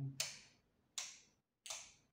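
Wall light switches clicked off one after another: three sharp clicks, about three-quarters of a second apart.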